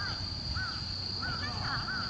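A bird giving a series of short calls, about five in two seconds, over a steady high-pitched drone.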